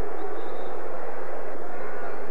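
Steady crowd noise filling a basketball arena during live play, an even din with no single sound standing out.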